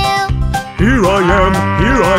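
A cartoon cow mooing over a children's song backing track: one long moo starting about a second in, its pitch swelling up and falling away at each end.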